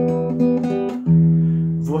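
Acoustic guitar being fingerpicked: single notes are plucked one after another and left ringing, with a stronger plucked note about a second in.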